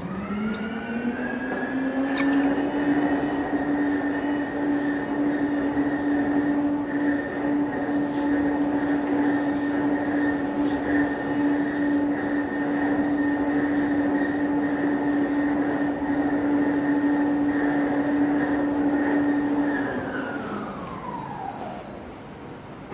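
Ship's horn of the Hurtigruten coastal ship MS Finnmarken sounding one long departure blast of about twenty seconds. The pitch rises as it starts, holds steady, then sags and fades near the end.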